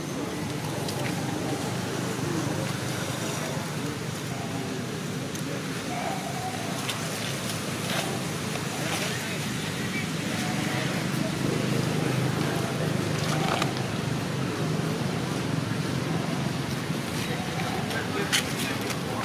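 Steady low background rumble with faint, indistinct voices and a few small clicks.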